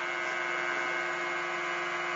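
Bedini-style pulse motor with its run coils wired in parallel, running at high speed: a steady hum of many even tones that holds one pitch.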